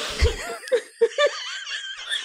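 Women laughing hard together in a string of short, wavering bursts.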